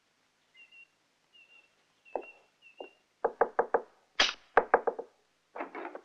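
Knuckles knocking on a wooden door: a couple of light raps, then quick groups of four or five firmer knocks.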